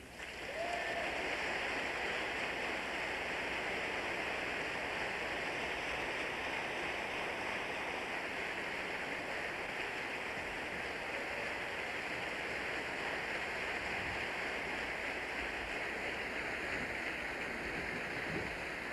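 Audience applauding steadily, swelling up within the first second.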